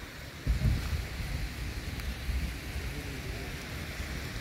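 Wind buffeting the microphone, a ragged low rumble that starts suddenly about half a second in.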